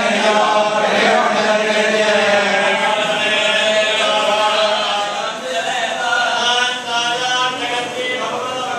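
Men's voices chanting a Hindu hymn together in steady, continuous recitation, a little softer from about halfway through.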